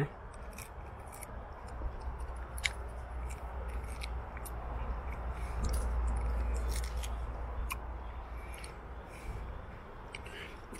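A ripe Sweetheart lychee's brittle skin being cracked and peeled by hand: scattered small crackling clicks over a low handling rumble on the microphone that swells midway.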